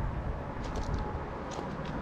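Steady low rumble of road traffic with wind buffeting the microphone.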